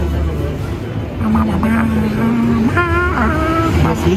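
City street traffic rumble. From about a second in there is a held tone that jumps higher with a wavering stack of overtones about three seconds in.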